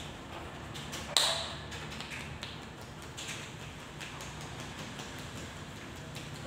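Hands massaging a person's head and face: light taps and skin-and-hair rubbing, with one sharp smack about a second in.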